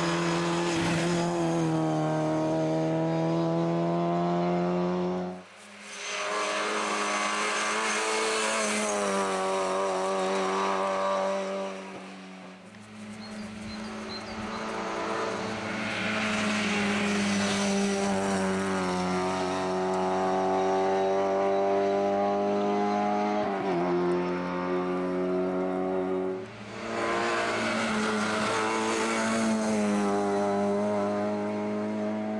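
Lada 2107 rally car's four-cylinder petrol engine run hard on a rally stage, its pitch climbing through each gear and dropping at the shifts. The sound comes in several separate passes that break off abruptly.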